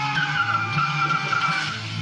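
A film trailer's soundtrack played over the room's speakers: music with a pulsing low beat, over which a high, slightly wavering tone is held for about a second and a half.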